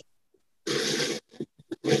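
A short breathy sound, about half a second long, through a video-call microphone, like a person exhaling or grunting; a few faint clicks follow, then a voice says "yeah" at the very end.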